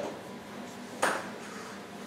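A whiteboard eraser knocks once against the board about a second in: a single short, sharp tap over low room noise.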